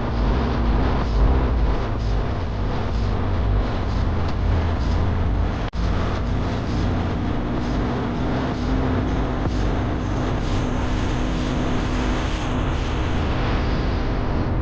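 Car on the move on an open road: steady tyre and wind noise with a deep rumble. The sound cuts out for an instant about six seconds in, and a faint low hum runs through the second half.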